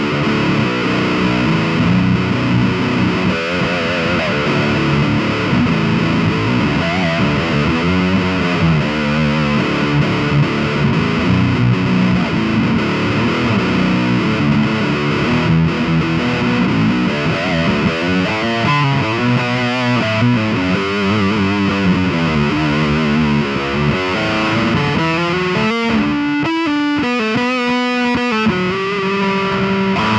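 Schecter eight-string electric guitar played through a high-gain amplifier with heavy distortion: a continuous improvised run of notes with wavering, bent and vibrato notes, turning to choppy stop-start chords near the end.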